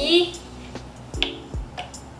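Several sharp clicks from a PC case's power button being pressed, with no fans or drives starting up: the power supply is not yet switched on.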